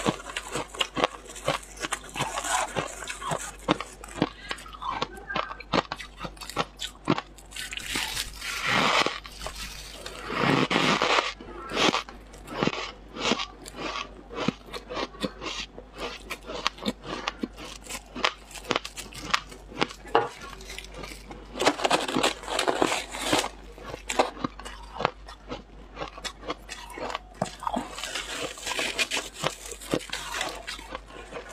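Freezer frost crunching close to a clip-on microphone: a dense run of short, crisp crunches as it is chewed, broken by several longer, louder scrunches as the frost is dug out and packed in a gloved hand.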